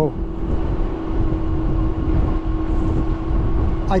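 Wind and road rumble on the microphone of a dual-hub-motor Ariel Rider Grizzly e-bike riding at steady speed, with a steady hum from the hub motors.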